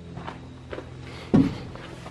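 John Deere utility tractor engine idling with a steady low hum, with footsteps and a short, loud voice-like sound about one and a half seconds in.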